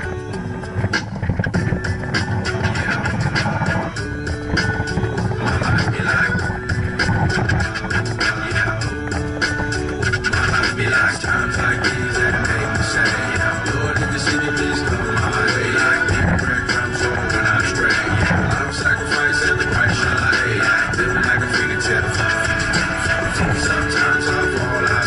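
Instrumental music with a steady beat and a repeating melody.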